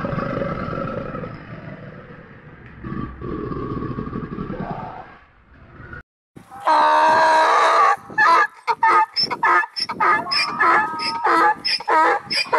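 A low rumbling animal growl in two long stretches, then an African wild ass braying: one loud, drawn-out call followed by a rapid run of short hee-haw calls.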